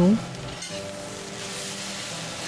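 Chicken pieces, chilies, peppers and onion sizzling in hot oil in a stir-fry pan, stirred and tossed with a spatula as oyster sauce goes in.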